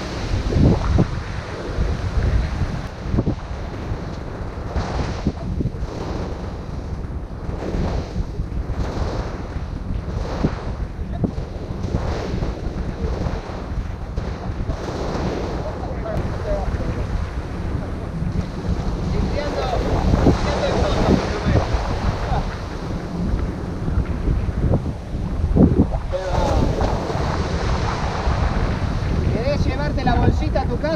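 Strong wind buffeting the microphone over surf breaking and washing up a sand beach, with louder swells of wave wash about two-thirds of the way through and again near the end.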